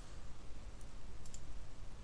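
A few faint computer mouse clicks, about a second in and again a little later, over a low steady hum.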